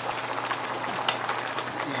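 Tomato sauce simmering and sizzling in a wok as fried tilapia is laid in with a spatula: a steady hiss with a few light clicks.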